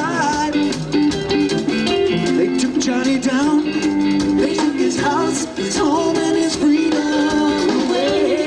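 Live rock band playing: electric guitars over a drum kit, with a wavering, vibrato-laden lead line riding on top and cymbals sounding throughout.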